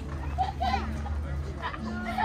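Voices of passers-by in a crowd talking and calling out, children's voices among them, with several people overlapping. A steady low hum runs underneath, shifting between a few pitches.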